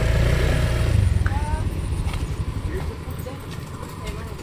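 Motor scooter engine idling with a steady low rumble. It drops noticeably quieter about a second in, then fades further toward the end.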